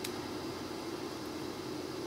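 Steady background hiss with a faint low hum: room and recording noise, with no distinct event.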